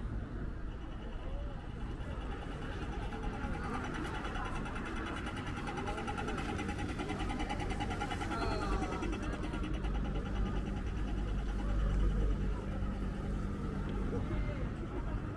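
Pedestrian crossing signal ticking rapidly while its walk light is green, fading out about ten seconds in. Under it is a steady rumble of street traffic, loudest near the end, with passing voices.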